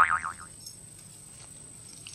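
A loud wobbling, boing-like twang that fades out within the first half second, then only faint outdoor background.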